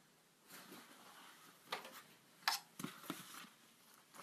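Faint handling noise: soft rustling, then a few small sharp clicks and knocks.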